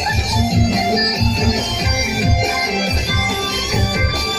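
Music with a steady beat played loudly over stage loudspeakers.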